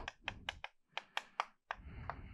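Chalk writing on a chalkboard: a quick series of short, sharp taps as a word is written.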